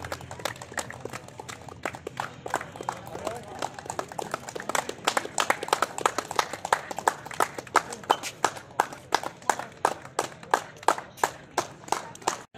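Hand clapping from a line of players: sharp separate claps, getting louder and more frequent about four seconds in, with voices in the background.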